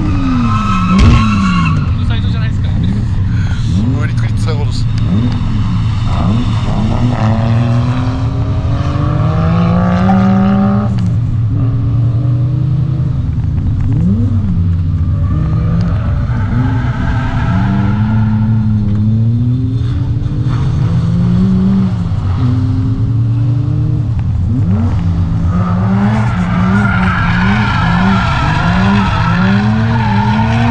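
A drifting car's engine revving up and falling back again and again, with its rear tyres squealing as they slide.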